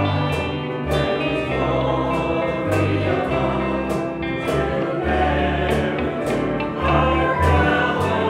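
Church worship team and choir singing a gospel song, backed by acoustic guitar and low held bass notes that change about once a second.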